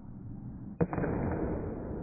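A bat striking a pitched ball: one sharp crack about a second in.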